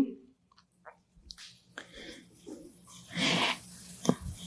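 A quiet pause with faint soft rustles, then a short breath into a handheld microphone about three seconds in.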